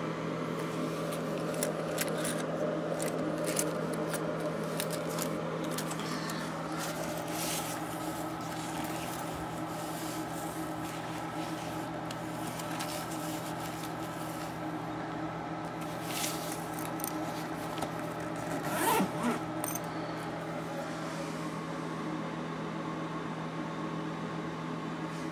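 Rustling, zipper and clicking sounds of a black fabric shoulder bag and a wallet being handled and searched through, over a steady low hum. About 19 seconds in, a brief sliding squeak-like sound is the loudest moment.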